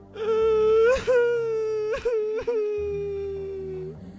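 A young woman's voice acting out crying: one long, high, drawn-out wail, broken by sobbing catches about a second in and twice more around two seconds in.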